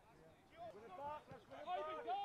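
Faint voices calling out in short shouts, starting about half a second in and coming more often towards the end, over quiet outdoor background.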